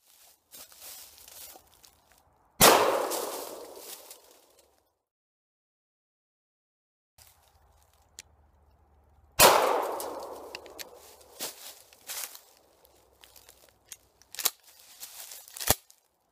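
Two blasts from a Remington 870 Police Magnum 12-gauge pump-action shotgun, about seven seconds apart, each echoing away over a couple of seconds. Several lighter clicks and clacks follow the second shot.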